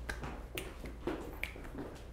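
Finger snaps in time with a dance box step: about four sharp, light snaps, irregularly spaced half a second to a second apart.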